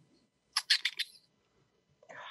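A quick run of about five short, sharp clicks, lasting under a second in all.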